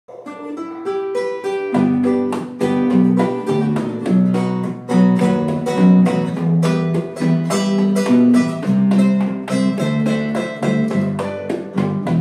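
Instrumental bolero intro on two nylon-string classical guitars, picked melody notes over chords, with an electric bass guitar joining about two seconds in.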